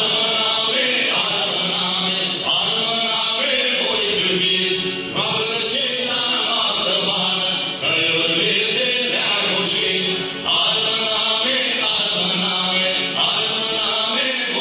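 Live band music with a voice singing in chant-like phrases over it, the sound dipping briefly between phrases every two to three seconds.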